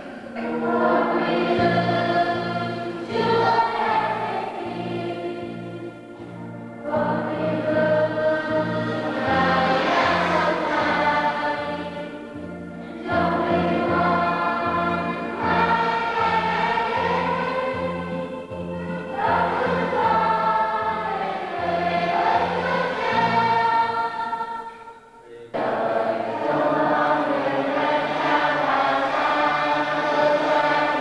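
Church choir singing a hymn over instrumental accompaniment that repeats low notes steadily. The singing comes in phrases with short breaks about every six seconds.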